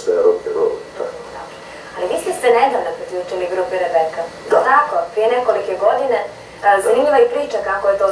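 Speech only: a man talking, a short pause about a second in, then a woman talking.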